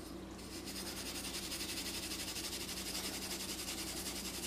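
Steel wool scrubbing a freshly etched copper-clad circuit board, a fast, even scratching that starts about half a second in, as the board is cleaned to expose the copper traces.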